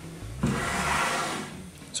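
Handling noise: a rustling rub lasting about a second, as parts are picked up and moved in the hands.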